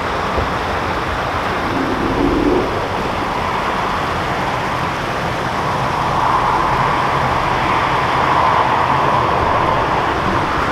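Steady rush of water pouring from a canal lock's bywash, growing louder about six seconds in as the boat draws into the lock mouth.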